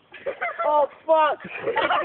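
Raised, high-pitched voices shouting and calling out in short bursts, with no clear words.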